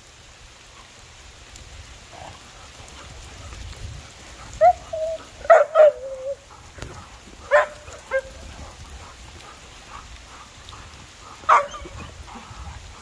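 Dogs yipping and barking in short bursts during play: a cluster of calls about five to six seconds in, two more around seven and a half to eight seconds, and a single one near the end.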